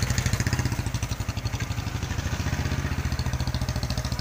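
Motorcycle engine idling close by, a steady fast putter that holds an even beat throughout.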